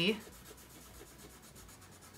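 Faint scratching of colored pencils shading on paper, in short strokes.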